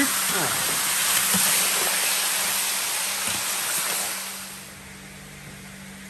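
Guinea fowl pieces sizzling and browning in a large metal pan: a steady, dense hiss that drops to a lower level about four and a half seconds in.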